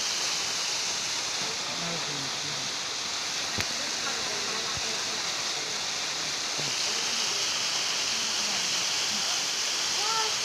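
Small waterfall pouring over rock into a pool: a steady rushing of water with faint voices underneath. A single short click comes about three and a half seconds in.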